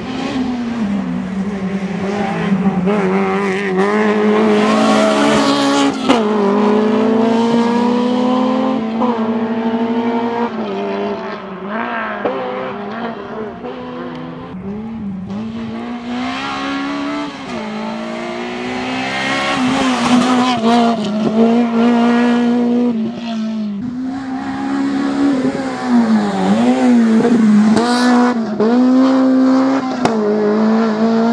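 Honda Civic Type R rally car's four-cylinder engine revving hard and changing gear repeatedly, its pitch climbing and then dropping sharply at each shift or lift as it accelerates and slows for corners.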